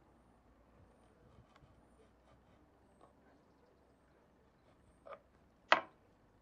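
A knife slicing rolled, sugared puff pastry on a wooden chopping board: two short knocks of the blade against the board near the end, the second much louder.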